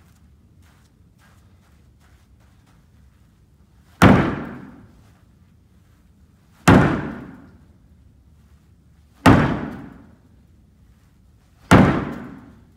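A small ball thrown hard into a plywood wall board, four loud slams about two and a half seconds apart, each ringing out briefly in the room.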